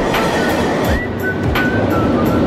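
Train running over a steel truss bridge, a steady rumbling noise.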